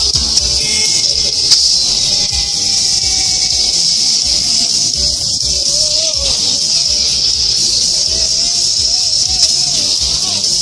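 Film soundtrack of a greased saucer sled speeding down a snowy hill: a loud, steady hissing rush over a low rumble, mixed with music. In the second half a wavering pitched sound keeps rising and falling.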